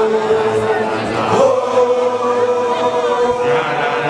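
A group of male voices singing a chant together in long, held notes, the chant of Basotho initiation graduates (makoloane). One note is held, then the group moves to a new long note about a second and a half in.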